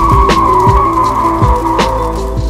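Music with a steady drum beat and a long high note that slides slowly down in pitch.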